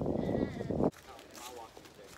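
Wind buffeting a phone microphone in a loud, even rumble, with a wavering voice-like sound over it, cutting off suddenly about a second in; after that only faint outdoor background with a few light footstep clicks.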